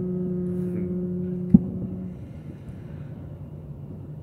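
A voice chanting a long, steady held "Om" that fades out about two seconds in, with a sharp click about halfway through.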